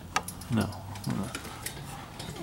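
Electrola 101 phonograph with a record turning under the needle: sharp ticks roughly every three-quarters of a second over a faint low hum, before any music plays.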